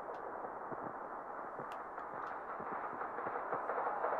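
Muffled, dark noise from the opening of a metal music video's soundtrack, steady and slowly building in loudness, with a few faint clicks.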